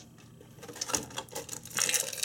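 Plastic toy packaging being handled and pried open: a quick run of clicks and crackles that starts about a second in.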